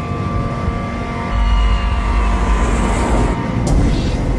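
Dark, suspenseful soundtrack music of held tones, with a deep rumble swelling up about a second in.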